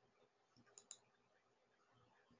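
Two faint computer mouse clicks in quick succession a little under a second in, otherwise near silence.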